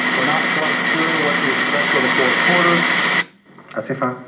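A voice under a loud, steady hiss and a high steady whistle. It cuts off suddenly a little after three seconds in.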